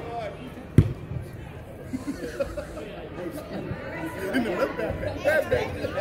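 Voices of players and spectators chattering in a large indoor sports hall, with one sharp thud of a soccer ball being struck a little under a second in.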